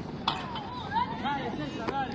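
Indistinct chatter of bystanders' voices, with a few sharp taps.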